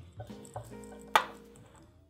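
Screwdriver working a screw into the pasta machine's metal side cover: a few small clicks, then one sharp metallic clink about a second in.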